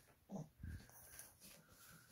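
Toy poodle making two short, faint breathy sounds within the first second, then a faint, thin, high whine on and off: the dog is excited for a duck-meat treat.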